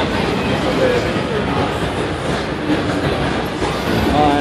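Loud, steady rumbling street noise with brief snatches of crowd voices.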